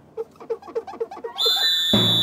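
Cartoon sound effects: a quick run of short squeaky notes, about seven a second, as a sponge is rubbed on a car's bodywork, then a long, steady, shrill whistle that starts about one and a half seconds in.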